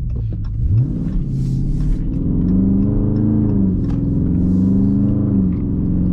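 Dodge Charger Scat Pack's 392 (6.4-litre) HEMI V8 accelerating away, heard from inside the cabin: the engine note climbs, drops twice as the automatic gearbox upshifts, then holds steady.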